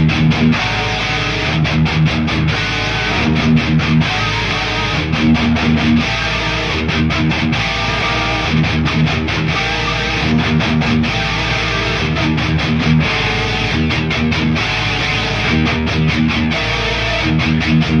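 Thrash metal backing track with no drums: distorted electric guitars play a heavy, repeating riff over low notes.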